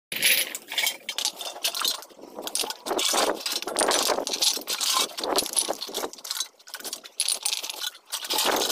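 Loose aluminium cans and plastic bottles in a scrap heap clinking, clattering and crinkling as they are stepped among and handled, in quick irregular clicks and rattles.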